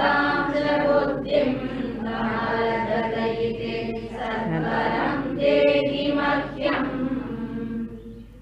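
A group of voices chanting a Sanskrit verse in unison, in a steady recitation tone, which stops near the end.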